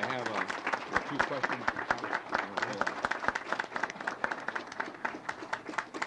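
A crowd applauding, many hands clapping densely and steadily, with voices heard over the clapping in the first second or so.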